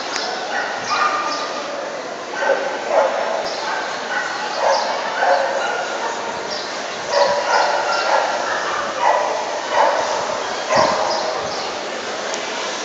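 A dog barking repeatedly, about ten short barks often coming in pairs, over a steady background hum of noise.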